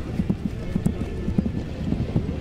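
Horse's hooves thudding on grass turf as a show jumper canters, dull low hoofbeats in a repeating stride rhythm of a few beats a second.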